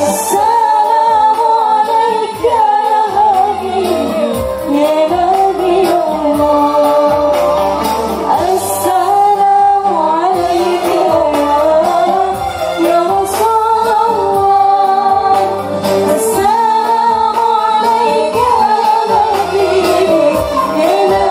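A woman singing a shalawat devotional song with a live gambus ensemble of oud, electronic keyboard and hand drums, amplified through a PA.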